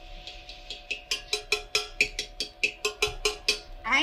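Rapid, even drumming with a piece of firewood on an empty tin can, about five strikes a second, growing louder about a second in, over the steady hum of a running circular saw.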